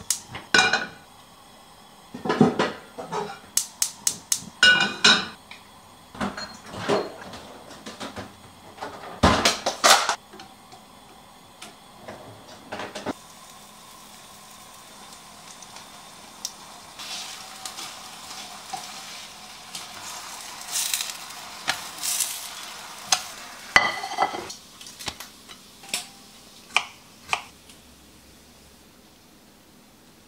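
A frying pan and utensils clattering and knocking on a gas stove, with many sharp knocks over the first dozen seconds. Then a steady sizzle of pancake batter cooking in the pan, with a few clinks, dying down near the end.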